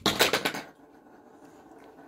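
Large plastic toy building blocks clattering down onto each other and the floor as a stacked block tower collapses. There is a quick run of knocks in the first half second that then dies away.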